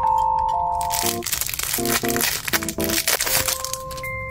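Clear plastic wrapping on a sticky-note pad crinkling in bursts as it is handled and opened, over soft background music with long held notes.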